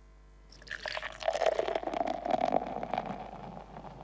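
Beer being poured into a glass. The pour starts about half a second in, dropping in pitch at first, then runs steadily and trails off near the end.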